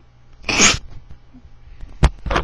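A single short, sharp burst of breath from a person, like a sneeze, about half a second in.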